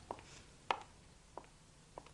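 Four faint, sharp taps, evenly spaced about two-thirds of a second apart, the second the loudest, over quiet room tone.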